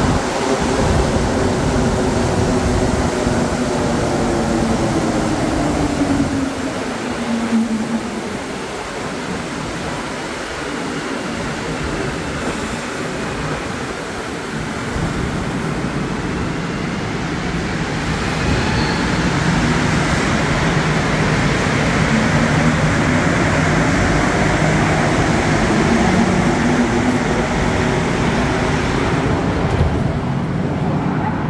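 Montreal Metro Azur rubber-tyred train pulling into the station, its motor whine falling in pitch as it brakes to a stop. It stands quieter at the platform for several seconds, then a rising whine as it accelerates away over the last third.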